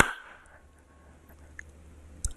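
A single hand clap right at the start, ringing out briefly; then quiet room tone with a faint low hum.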